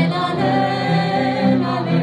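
Singing in a slow song, accompanied by a bowed cello holding long notes.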